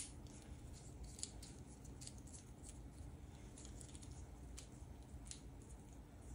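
Round cardboard game tokens clicking together as they are handled in the hand: one sharper click at the start, then faint, scattered clicks.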